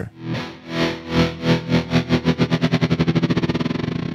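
A recorded guitar loop chopped into a tremolo: its volume pulses on and off under a synthesizer LFO's control voltage. The pulses speed up from a few a second to a rapid flutter as the LFO rate is raised.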